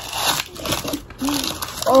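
Brown kraft packing paper crinkling and rustling as it is pulled open by hand, in several short spells.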